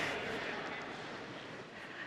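Faint room sound of a large conference hall: an even hiss that slowly fades.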